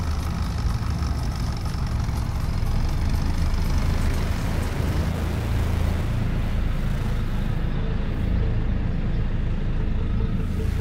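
A vehicle's engine running at low speed, heard from inside the cab as a steady low rumble.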